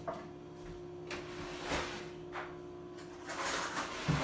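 A few short knocks and clatters of kitchen utensils and drawers as a fork is fetched, then a denser scraping clatter near the end, over a steady low hum.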